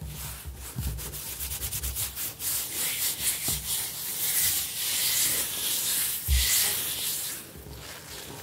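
Fingers and hands scratching and rubbing on a hard kitchen countertop: quick separate scratching strokes at first, then a steady hissing rub across the surface from about three seconds in until shortly before the end, with one soft thump near six seconds.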